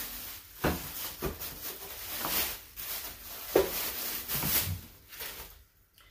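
Rustling and handling noise as small objects are rummaged through and picked up, with a few light knocks.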